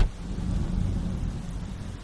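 A car door slams shut, followed by a low rumble that slowly fades.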